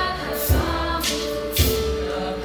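Eighth-grade mixed chorus of boys and girls singing in parts. The chorus holds sustained notes, and a percussion beat strikes about once a second.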